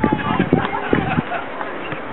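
Several voices calling out over an outdoor sports field, words indistinct, with a few short knocks.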